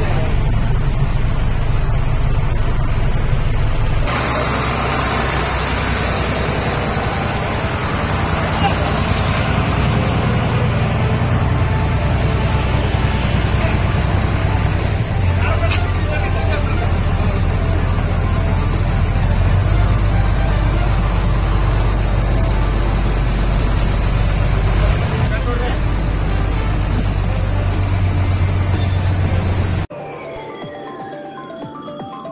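Bus engine running steadily, heard from inside the bus, its low drone changing pitch a few times as the bus moves, with voices and music mixed in.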